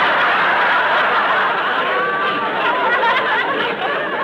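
Studio audience laughing loudly and without a break at a comedy punchline, a crowd of laughs with single voices standing out. It eases slightly near the end. The sound is on a narrow-band old radio recording.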